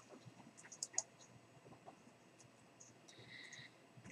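Near silence with a few faint clicks, the sharpest about a second in, typical of a computer mouse button being clicked. A faint short high tone sounds about three seconds in.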